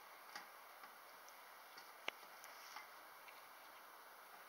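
Near silence: faint steady hiss with a few small scattered ticks and one sharper click about two seconds in.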